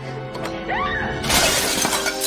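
A glass shattering against a wall about a second and a quarter in, a loud crash with trailing breakage, over steady dramatic background music. A brief gliding voice is heard just before the smash.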